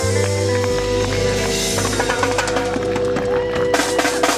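Live reggae band playing an instrumental passage: held keyboard chords over bass, guitar and drums. The drumming gets busier halfway through, with loud cymbal crashes near the end.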